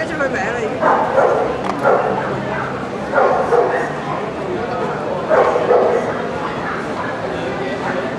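A dog barking and yipping in short bursts, about six times, over the steady chatter of a crowd.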